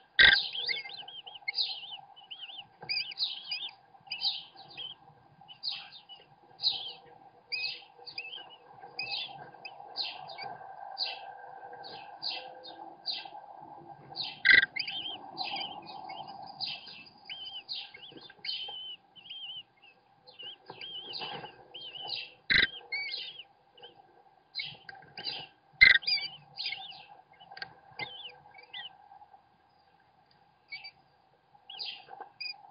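American kestrel nestlings begging to be fed: rapid, high-pitched chirps repeated several times a second with short pauses, broken by four sharp knocks, over a steady hum.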